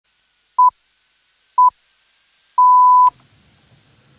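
BBC Greenwich Time Signal, 'the pips': two short 1 kHz beeps a second apart, then the longer final pip of about half a second, which marks the top of the hour.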